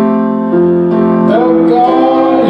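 Worship song: sustained keyboard chords with a singing voice, which slides up into a held note about a second and a half in.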